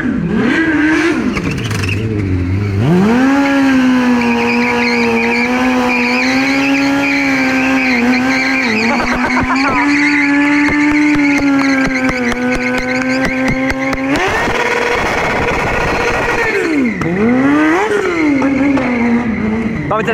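Sport motorcycle engine during a stunt run: quick revs up and down, then held at high revs for about eleven seconds with tyre squeal. Near the end a rough, noisy stretch gives way to more quick blips of the throttle.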